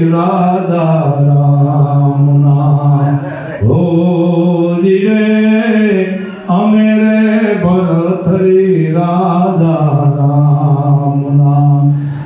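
A man's voice chanting into a microphone in long, held, slowly wavering notes, with short breaks for breath about three and a half and six and a half seconds in.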